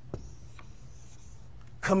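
Marker writing on a whiteboard: a click just after the start, then a few faint short strokes. A man's voice begins right at the end.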